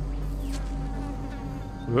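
A steady low buzzing hum that stays level, with a faint higher tone over it.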